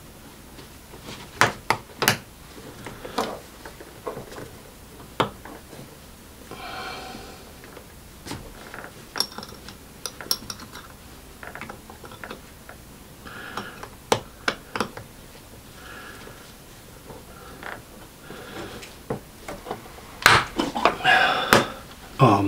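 Scattered sharp clicks and taps of a metal snap-on watch case back being pressed and worked by hand against a Timex quartz watch case, with a quick run of clicks near the end; the back is not snapping into place.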